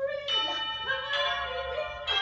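Two struck bell chime notes, the first about a quarter second in and the second a second later, each ringing on with a steady tone.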